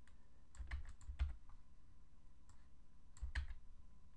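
Computer keyboard keystrokes and clicks as code is copied and pasted in an editor: a few quick taps from about half a second in to just past one second, then a short group a little after three seconds.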